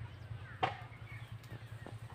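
A pause in speech: faint background noise with one short sharp tap about two-thirds of a second in, and a couple of fainter ticks later.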